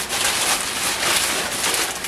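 Clear plastic bags of LEGO pieces crinkling and rustling as they are handled, an uneven run of small crackles.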